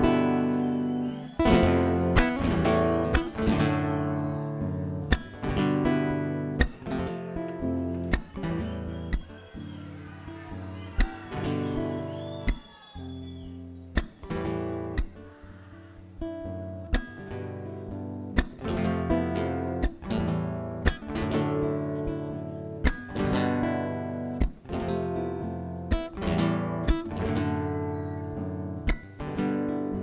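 Acoustic guitar strumming a malambo accompaniment, with sharp accented chord strokes throughout.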